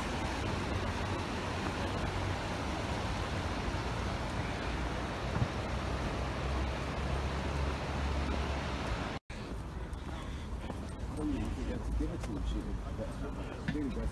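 Steady outdoor noise of road traffic and wind on the phone microphone, heavy in the low rumble, while walking. About nine seconds in it cuts off sharply; after that, quieter street sound with faint voices of passers-by.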